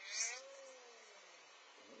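A plastic bottle of epoxy resin squeezed hard by hand, air sputtering out of its nozzle with a short fart-like squawk: a sharp hiss at first, then a tone that rises and falls away over about a second.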